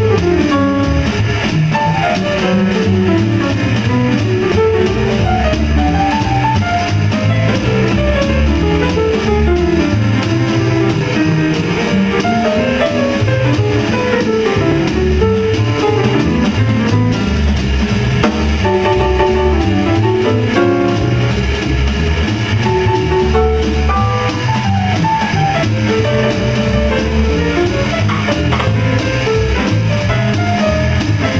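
Live jazz: a grand piano plays quick runs of notes up and down the keyboard over plucked upright double bass, with a drum kit behind them.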